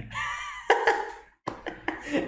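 A man laughing in short, broken bursts, with a sharp burst about a third of the way in and a brief drop to silence a little past halfway.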